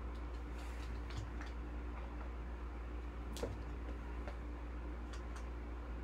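A few light clicks and soft rustles from a foil trading-card pack and its cardboard hobby box being handled, sparse and faint, the sharpest about halfway through, over a steady low hum.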